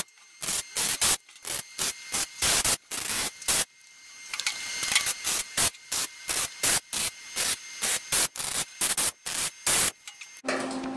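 Lincoln Electric MIG welder stitch-welding thin sheet steel with short trigger pulls. Each tack is a brief crackling buzz, two to three a second, with short gaps between, in one longer run of crackle about four seconds in.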